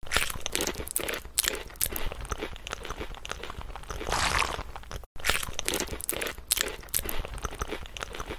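Close-miked ASMR eating sounds: crunchy, irregular chewing and biting of vegetables. A denser stretch comes about four seconds in, and there is a brief break a little after five seconds.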